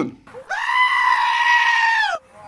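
A goat giving one long, loud bleat that starts about half a second in, holds a steady pitch, and drops away at the end.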